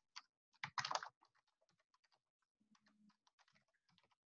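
Faint computer keyboard typing: a quick run of key clicks, loudest about a second in.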